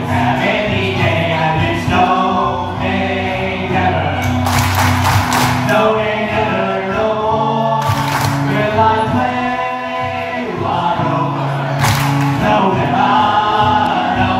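Live pirate folk band: a man singing into a microphone over acoustic guitar, with several voices singing along. Hand claps come in a cluster about four and a half seconds in, again around eight seconds and once near twelve seconds, the audience's four-two-one clapping pattern.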